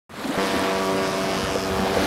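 Steady rushing noise with a faint even hum underneath, fading in at the very start: a wind-and-sea sound effect for a cartoon boat.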